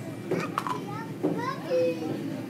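Young children's voices: short high-pitched calls and babble that slide up and down, with one held vocal note near the end that is the loudest sound.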